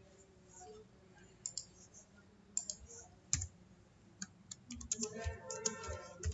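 Keystrokes on a computer keyboard. There are quiet, scattered single taps, then a quicker run of them toward the end.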